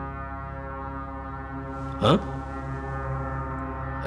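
A low, steady drone held on one deep note, from the film's tense background score, with a brass-like tone. A short vocal sound cuts in briefly about two seconds in.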